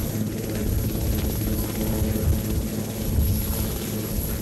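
Marine One, a Sikorsky VH-3D Sea King helicopter, running on the ground with its rotors turning: a steady drone of rotor and turbine engines with a low, fluttering beat.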